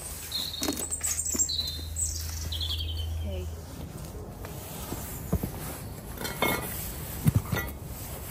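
A small garden bird giving several short, high chirps over the first three seconds. Later a few sharp knocks and rustles are heard, the loudest near the end.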